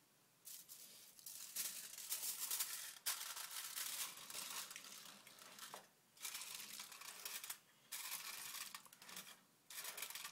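Aluminium foil crinkling as it is folded and pressed tightly around the rim of a pudding ramekin to cap it, in crackly bursts with a few brief pauses.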